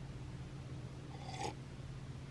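Quiet room tone with a steady low hum, and one brief faint rustle about a second and a half in.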